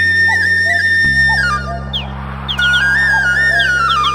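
Instrumental folk-song intro: a flute plays a stepping, held melody over a steady low drone, dropping out briefly about two seconds in, with a few quick falling grace notes.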